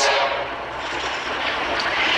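Steady background noise of an old cassette recording during a pause in speech: even hiss and low hum with a faint steady tone.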